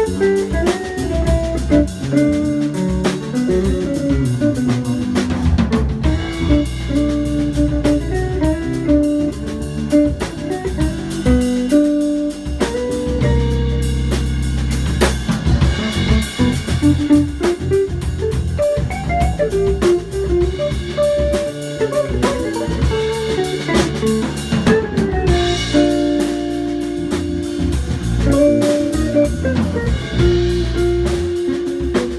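A live instrumental trio of semi-hollow electric guitar, electric bass and drum kit. The guitar plays single-note melodic lines over the bass and drums, with steady cymbal playing.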